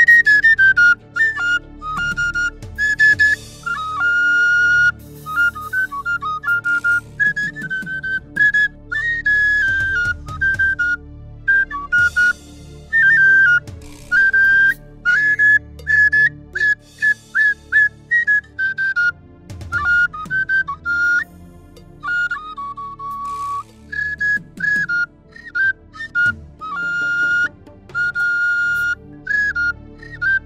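A high flute playing a lively melody in short phrases of quick notes and trills, the pitch hopping up and down, over a faint low steady hum.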